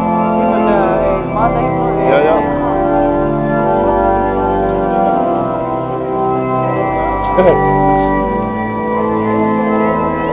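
Church organ playing a processional in sustained chords that change every second or so, with brief murmurs of voices near the start and about seven seconds in.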